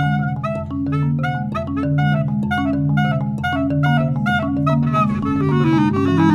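Bass clarinet playing a line of low held notes that step from pitch to pitch, under a fast, steady run of marimba notes struck with mallets.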